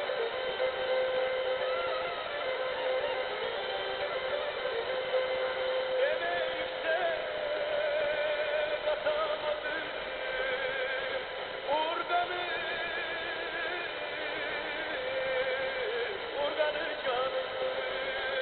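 Turkish folk music from the TRT Türkü station, received on 92 MHz FM and played through a small portable radio's speaker. The sound is thin, with no bass, and its melody line wavers up and down in pitch.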